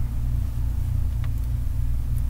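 A steady low hum that never changes, the recording's constant background noise, heard plainly in a gap between sentences.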